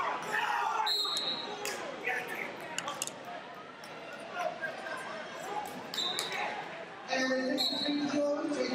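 Busy gym-hall ambience of many voices talking and calling out, echoing in the large room, with a few short high squeaks. A louder voice comes in about seven seconds in.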